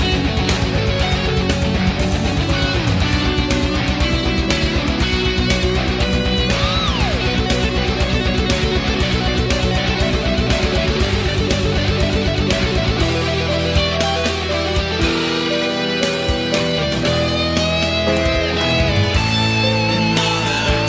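Thrash-metal track built from virtual instruments: distorted electric guitars, bass and drums, with a lead guitar bending notes over the top. A fast, even drum beat drives the first two-thirds, then the drumming thins out into a sparser section.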